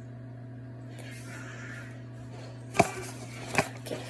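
Two sharp clatters of kitchen utensils being handled, the second following less than a second after the first near the end, over a steady low hum.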